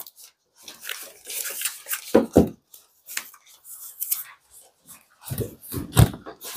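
Scattered clicks and rustles of hands handling an incubator and its controls, with two brief low vocal sounds, about two seconds in and again near the end.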